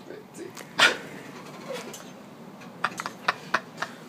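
A person's short, loud yelp about a second in, then a quick run of light clicks in the last second.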